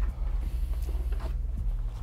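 Soft background music with a steady low bass. A few faint taps and rustles of packaging are handled over it as the boxed motherboard is unpacked.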